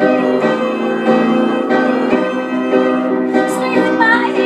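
Upright piano played in steady, regularly struck chords, with a woman singing over it.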